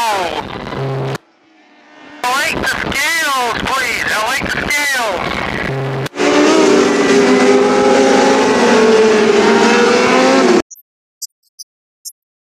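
600cc micro sprint car engines racing, their pitch repeatedly rising and falling as the cars run through the turns, with two short breaks in the sound. About six seconds in comes a louder, steadier engine note that slowly drops in pitch until the sound cuts off abruptly near the end.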